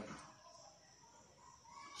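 Near silence: quiet room tone with a faint, drawn-out distant animal call in the middle.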